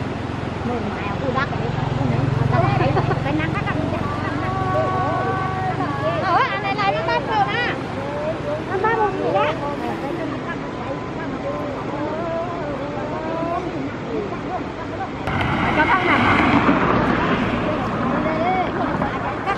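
Several women's voices talking and calling out together. A motor vehicle hums past early on, and there is a louder rush of noise near the end.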